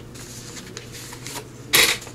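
Paper rubbing and rustling as journal pages and a paper belly band are handled, with one brief, louder rush of paper noise near the end.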